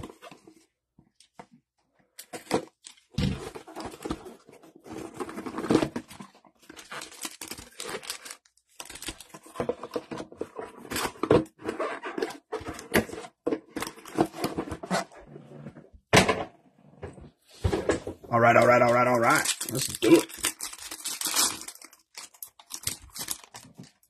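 A cardboard blaster box is sliced open with a utility knife and torn apart by hand, with scattered scraping and crinkling of packaging as the card packs are handled. A short pitched vocal sound comes about three-quarters of the way through.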